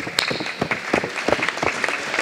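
An audience applauding, with dense clapping that sets in sharply at the start and keeps up at a steady level.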